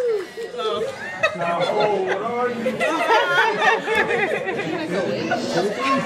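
Several people talking over one another in a crowded room, just after a held sung note slides down and ends right at the start.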